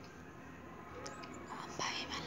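Faint whispering in a quiet pause, with a soft breathy voice sound near the end.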